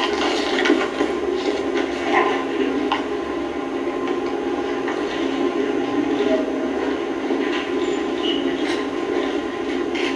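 Steady low background noise from a live news-conference broadcast, heard through a television's speaker, with a few faint clicks in the first few seconds.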